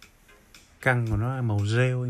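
A man's voice drawing out a long, wavering 'baaa', starting just under a second in.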